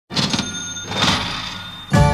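A sudden clatter with a bright ringing, bell-like tone, struck twice and left ringing as it slowly fades.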